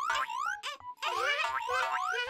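Cartoon boing sound effects: a quick series of about six short rising boings, with a brief pause about a second in.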